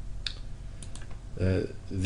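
A few light, short computer clicks, the input clicks of a desktop workstation while drawing on screen.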